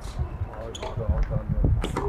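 Tennis rally on a hard court: a tennis ball struck by rackets and bouncing, heard as sharp hits, the loudest near the end.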